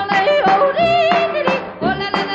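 A female yodeler singing over a small band on an old Decca 78 rpm shellac record. Her held notes have vibrato and flip quickly between chest voice and head voice.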